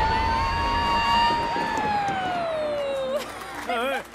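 A long, high held vocal cry that holds one pitch, then slides down over the second half, over the low rumble of a bowling ball rolling down the lane in the first part. Excited voices break in near the end.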